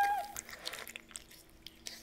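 Tail of a cat's meow sound effect: a held call that stops about a third of a second in. After it come a few faint clicks over a low steady hum.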